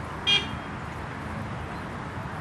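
A single short, high-pitched horn toot about a quarter second in, over a steady low rumble.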